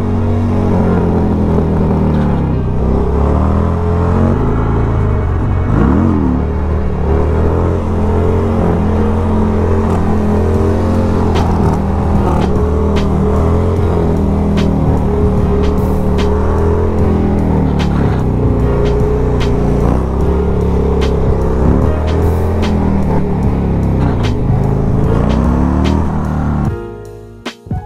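Harley-Davidson Sportster 1200 V-twin engine running as the bike is ridden, its pitch rising and falling with the throttle. Background music with a steady beat plays over it.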